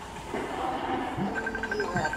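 A steady, noisy rumble with a quick run of about eight short, high beeps in the second half.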